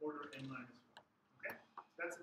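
A man's voice talking briefly, then a sharp single click about one and a half seconds in.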